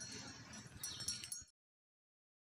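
Faint outdoor background noise with a few light clinks, cutting off abruptly to silence about one and a half seconds in.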